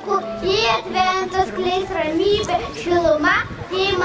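A young boy's voice through a handheld microphone, in sing-song phrases with several drawn-out notes.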